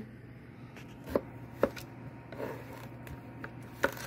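Kitchen knife slicing a cucumber lengthwise on a cutting board, with three sharp knocks of the blade hitting the board: about a second in, half a second later, and near the end.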